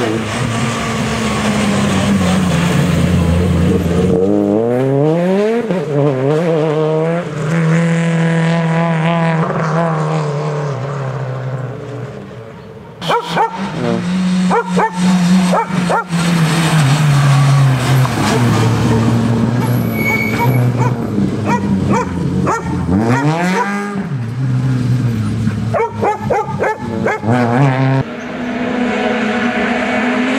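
Peugeot 208 rally car's engine revving hard, its pitch climbing steeply as it accelerates and dropping between gears over several passes. Clusters of sharp crackles come around the middle and again near the end.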